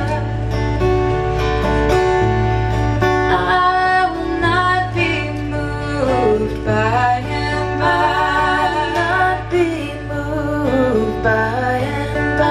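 Live acoustic performance of a slow ballad: female singing with vibrato over an acoustic guitar.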